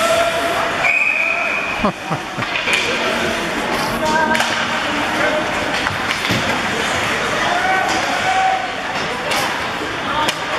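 Live ice hockey in an arena: players and spectators shouting, with several sharp clacks of sticks and puck.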